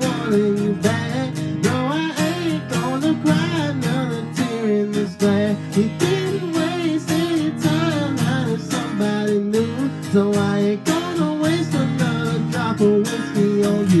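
Cutaway steel-string acoustic guitar strummed in a steady rhythm, with a singing voice carrying a wavering melody over it.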